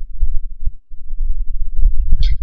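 Loud, irregular low-pitched rumbling with uneven thumps, and no clear pitch.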